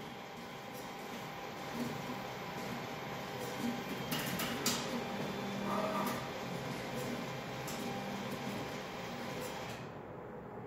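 An ATM's cash-deposit mechanism running with a steady whir and a few clicks about four to five seconds in, while it processes the deposited bills.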